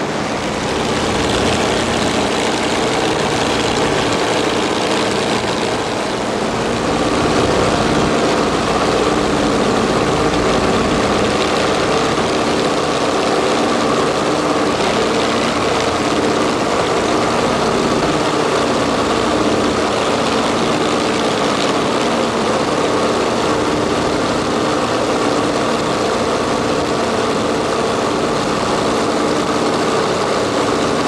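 Steady drone of the B-24 Liberator's four Pratt & Whitney R-1830 radial engines and propellers in cruise, heard from inside the fuselage, with a constant rush of air over it. It grows slightly louder about seven seconds in.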